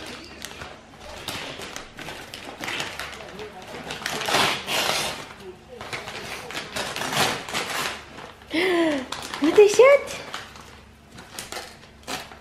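Wrapping paper and tissue paper being pulled and torn off a large gift by hand, crinkling and rustling again and again. A short, high voice calls out briefly late on.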